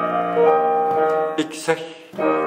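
Solo piano playing held chords, with a fresh chord struck about half a second in. The notes die away toward the end.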